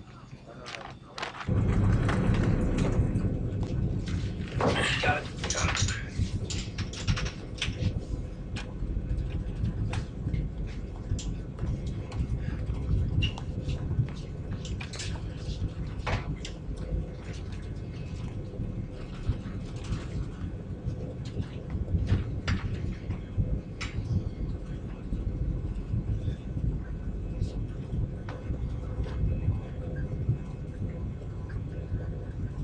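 Low steady rumble of an airliner in flight that comes in abruptly about a second and a half in, with scattered clicks and knocks over it and a busier patch of clatter a few seconds in.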